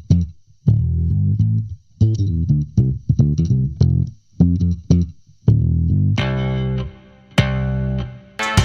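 Electric bass line played through IK Multimedia Mixbox SE's SVT Classic bass amp, parametric EQ, White 2A compressor and chorus modules, with the chorus mix being turned down to nothing. Short plucked notes broken by brief gaps, then longer held notes near the end.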